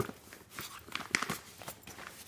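Fabric backpack being handled as its top is opened: a run of short rustles and clicks, the loudest about a second in.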